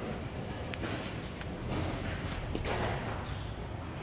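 Steady workshop background noise, a low rumble and hiss, with a few faint clicks.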